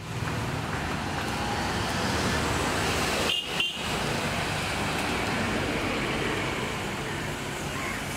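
Steady roadside traffic noise, a continuous rumble and hiss of passing vehicles, with a brief dip a little past three seconds.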